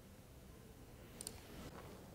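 Near silence with a faint double click about a second in, a computer mouse button being pressed and released.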